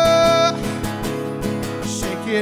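Acoustic guitar strummed in a steady rhythm, with a man's voice holding one long sung note over it that ends about half a second in, leaving the guitar alone.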